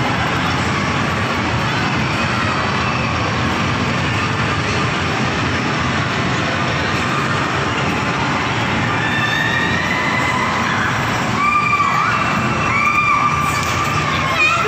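Steady din of an indoor amusement park, with rides rumbling and a crowd. High shrieks and shouts rise over it from about nine seconds in, loudest near the end.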